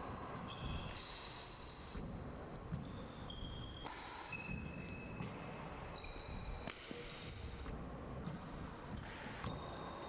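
Faint handball rally: the small rubber ball smacking off the walls and floor in sharp single hits, with short high squeaks of court shoes on the hardwood floor.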